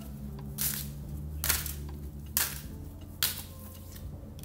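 Tarot cards being shuffled by hand, giving four short, sharp papery slaps a little under a second apart before a card is drawn.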